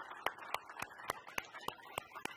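Audience applauding: a steady patter of many hands with one set of louder claps at an even pace of about three or four a second.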